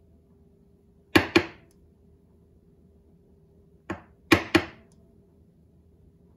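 A bronze flat-bottom spokeshave is rapped against a wooden workbench to tap its blade into adjustment. There are two quick double knocks about three seconds apart, with a lighter knock just before the second pair.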